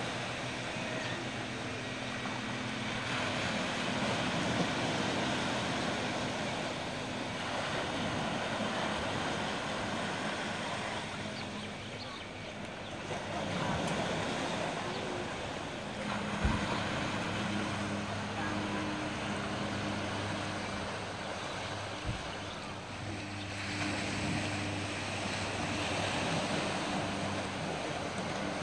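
Small waves washing onto a beach with wind on the microphone, under a boat engine's steady low hum that fades out for a while in the middle and returns. Two brief knocks are heard about halfway through.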